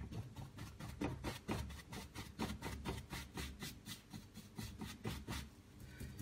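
Bristle brush dabbing paint onto a stretched canvas: quick repeated taps, about five a second, each with a soft thud from the canvas.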